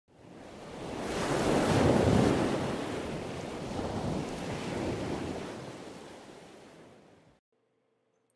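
Rushing, surf-like swell of noise from a logo intro sound effect: it builds over about two seconds, holds, then slowly fades and cuts off shortly before the end.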